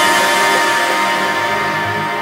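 Background music: sustained tones that slowly get quieter.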